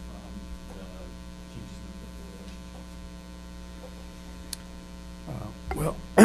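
Steady electrical mains hum, a constant low drone with several fixed tones, at a moderate level.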